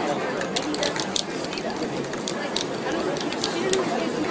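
Aerosol spray-paint can hissing in a series of short bursts, with people talking in the background.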